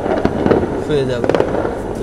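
Fireworks bursting over a city: a rapid, uneven run of pops and crackles, with a man's voice briefly about a second in.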